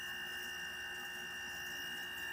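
Steady room tone: a constant low hum with thin, steady high-pitched whining tones and no other events.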